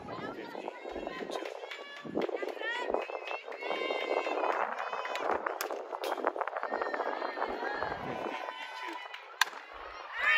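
Players and spectators talking and calling out around a softball field, then near the end one sharp crack of a fastpitch softball bat hitting the ball.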